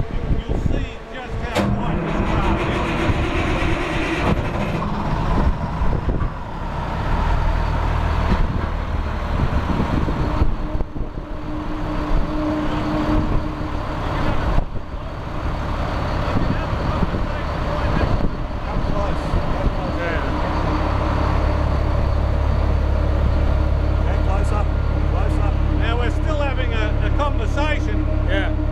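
A Velocity 30 hovercraft's seven-blade, variable-pitch ducted propeller and its engine running at a steady speed: an even hum of engine tones with a fan rush, the low rumble growing stronger from about two-thirds of the way in as the blades are approached close up.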